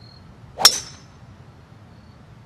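A golf club striking a teed-up ball on a full swing: one sharp metallic crack with a brief high ring, a little over half a second in.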